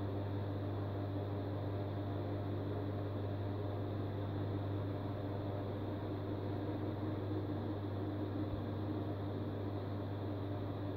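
Steady low hum with a faint even hiss, unchanging throughout: the background drone of the room, with no other events.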